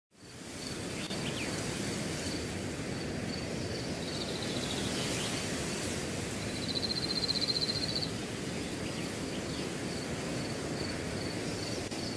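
Outdoor nature ambience: a steady rushing background noise with a thin, high, steady buzz. A rapid high trill, the loudest part, comes about two-thirds of the way through, and there are a few faint chirps. It fades in at the start and fades out at the end.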